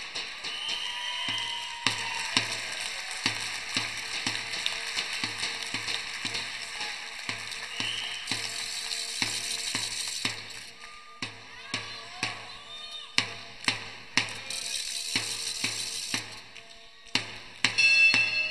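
Spectators in a wrestling hall: a drum beaten steadily about twice a second over continuous crowd noise, with the crowd swelling twice.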